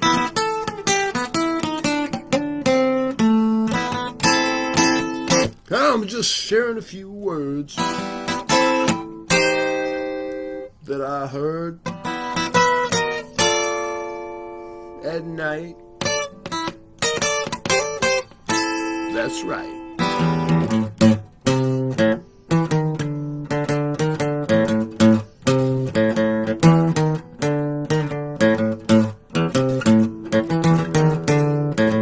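Acoustic guitar with a cutaway body, played by hand: picked notes and chords ringing out, settling into a steadier strummed pattern with heavier bass notes about two-thirds of the way in.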